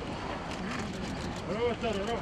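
Outdoor background noise: a steady low hum of distant traffic, with faint, distant voices talking a second or so in.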